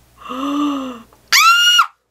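An impressed, drawn-out vocal 'ooh' from a woman, followed about a second later by a short, loud, very high-pitched excited squeal that cuts off suddenly.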